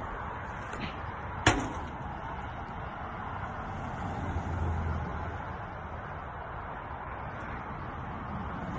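A plastic jug dropped into a pit of water lands with a single sharp slap about a second and a half in. Steady outdoor background noise follows.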